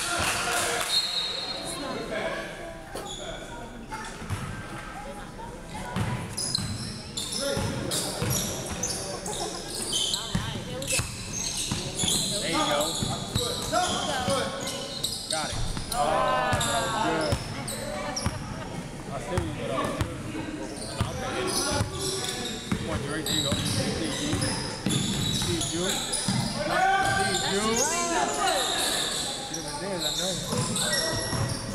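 Indoor basketball game in a large echoing gym: a basketball bouncing on the hardwood court in repeated thuds, sneakers squeaking, and players' voices calling out across the hall.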